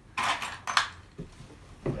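Loose metal screws clinking and rattling in a plastic parts bin as a hand rummages through them, a burst of clatter lasting about a second, followed by a couple of faint clicks.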